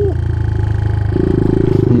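Suzuki DR200 single-cylinder four-stroke motorcycle engine running while being ridden, its note growing louder about a second in at a steady pitch.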